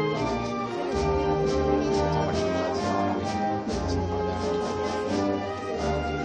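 A Spanish wind band plays a processional march live, with brass holding sustained chords over a regular percussion beat.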